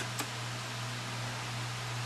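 Steady background hiss with a low, even hum, with one faint click shortly after the start.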